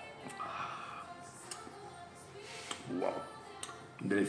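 Quiet background music with steady held tones, and a brief rising noisy sound about three seconds in.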